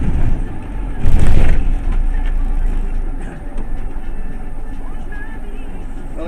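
Steady low engine rumble and road noise inside a 30-seat bus driving slowly, with one loud half-second burst of noise about a second in.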